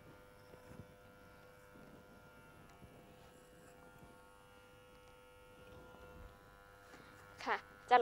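Moser 1400 electric hair clipper running with a faint, steady buzz as it is run over a comb to cut short hair at the nape.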